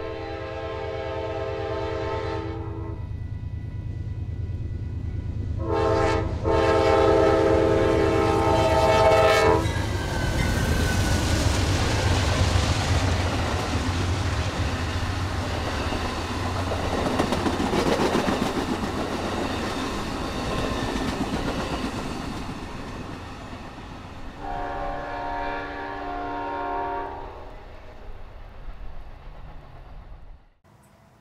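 A train going by with its locomotive air horn sounding a chord in three blasts: one at the start, a longer one a few seconds in, and a shorter one near the end. Between the blasts come the loud rush and rumble of the passing train and the clatter of its wheels on the rails.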